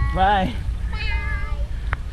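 Two short high vocal calls from a voice, the first rising and falling in pitch, the second higher and held briefly, followed by a sharp click near the end, over a steady low rumble.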